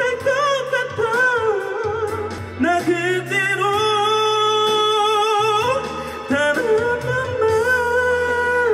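A man singing a pop ballad into a microphone over a backing track, holding long notes with vibrato across two phrases. His voice is pressed and chest-heavy, which the vocal trainer calls a habit of pressing down on the sound.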